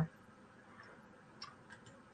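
Quiet room tone with a few faint, short clicks in the second half, one about one and a half seconds in and a small cluster near the end.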